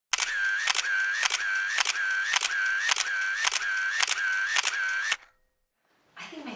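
Camera shutter firing in a run of about ten frames, just under two a second, with a motor-drive whirr between each click. It stops suddenly about five seconds in.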